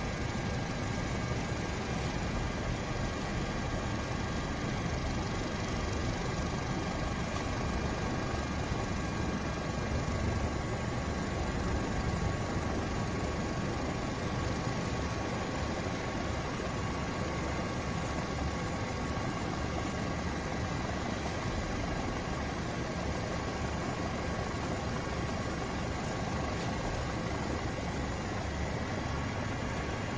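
Steady aircraft engine drone heard from inside the aircraft carrying the camera, an even rushing noise with several constant whining tones that hold unchanged throughout.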